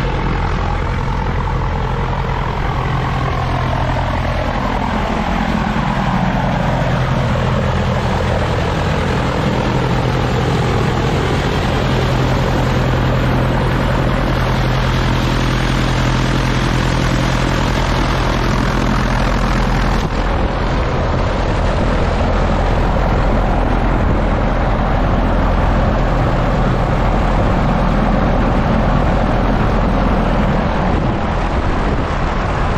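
Cessna 175's piston engine and propeller running on a ground run, its pitch falling over the first several seconds and then holding steady. The run circulates leak-detector dye through the oil to show an oil leak.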